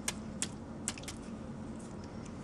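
Fingers flicking a plastic syringe barrel to knock air bubbles loose from the drawn-up solution: a few sharp ticks, three louder ones within the first second, over a steady low hum.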